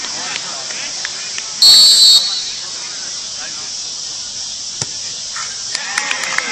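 A single short, high sports whistle blast, about half a second long, a little over a second and a half in, over faint voices from the field.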